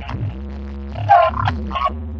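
Loud dance music with a deep bass line, played through a large parade sound system.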